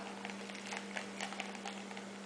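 Faint, scattered small clicks and taps of fingers handling a shoelace cord and its hardware while tying a knot, over a steady low hum.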